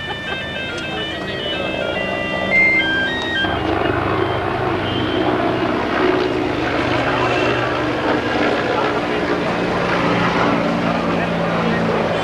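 A simple electronic melody of plain beeping tones, stepping in pitch several times a second, plays for the first three seconds or so, then stops abruptly. After it, a crowd talks over a steady low hum.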